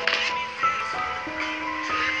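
Music playing: a song with held, steady notes that change pitch in steps.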